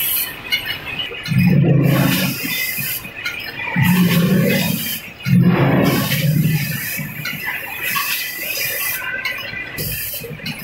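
Vacuum pouch packing machine and screw weigher running: three low hums, each a second or so long, between about one and seven seconds in, over a steady hiss that breaks off briefly several times.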